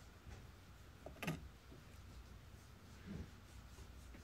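Quiet room tone with a faint low hum. There is one short faint click about a second in and a soft faint sound near three seconds.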